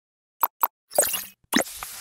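Animated logo-intro sound effects: two quick plops about a fifth of a second apart, then a brighter, sparkling burst, then another pop that leads into a fuller sound near the end.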